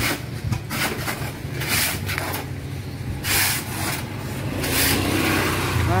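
A hoe scraping through sand and cement mortar in a mixing box, one stroke about every second or so, over the steady low hum of a car engine running.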